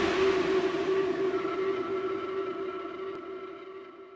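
Logo-intro sound effect: a steady, held droning tone with overtones that fades out slowly.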